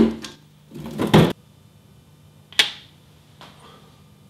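A scrape of plastic freezer parts as the samples are taken out, cutting off suddenly, then a single sharp click as a glass petri dish is set down on a metal baking tray.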